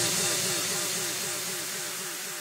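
Fading outro tail of a drum and bass track: a soft hiss with a repeating pattern of short falling tones, about four a second, dying away after the full mix has cut out.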